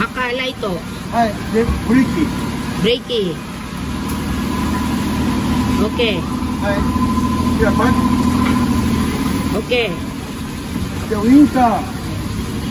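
Suzuki Every DA17 kei van's three-cylinder engine idling steadily, with the rear lamps switched on for a check after a bumper swap, and voices over it.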